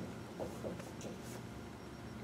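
Dry-erase marker writing on a whiteboard: a few short, faint strokes and scratches in the first second and a half.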